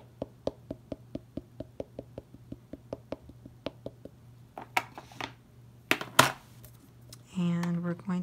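Small ink pad dabbed rapidly onto a clear stamp on a plastic stamping-platform lid: a quick, even run of light taps, about five a second. Past the middle come a few louder knocks as the hinged lid is swung down onto the card, and a woman's voice comes in near the end.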